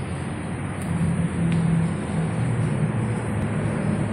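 Steady rumble of road traffic, with a low hum that wavers.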